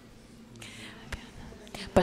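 Faint whispered speech, soft and breathy, rising a little about halfway through, with a couple of small clicks, before a woman's voice starts loudly on a microphone at the very end.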